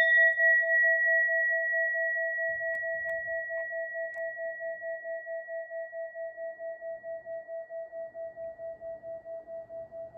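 A hand-made Takaoka orin (Buddhist altar bowl bell), struck once just before, rings on with a long lingering resonance: a low tone with a fainter high overtone, slowly fading and pulsing about four to five times a second.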